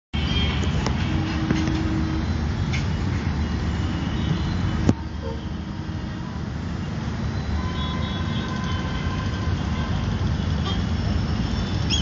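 Steady low rumble of outdoor background noise, with one sharp click a little before five seconds in.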